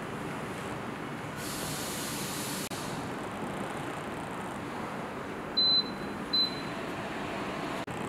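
Air cooler's fan running with a steady rushing airflow noise. About two-thirds of the way in, its touch control panel gives two short high beeps, the first a little longer than the second.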